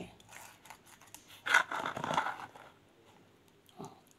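Fingers slowly prying open the top of a frozen rice-stuffed green pepper, with one short scraping burst about one and a half seconds in and a faint one near the end.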